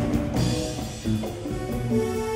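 Live band playing electric guitars and bass, with drums.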